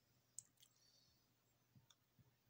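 Near silence: faint room tone with a few small, faint clicks, the clearest about half a second in and another near the end.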